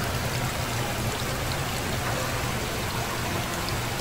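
Steady splashing and trickling of water running from the circulation pipes into live seafood tanks.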